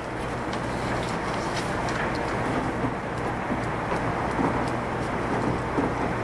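A steady rushing noise that swells up in the first second, then holds level, with a few faint clicks over it.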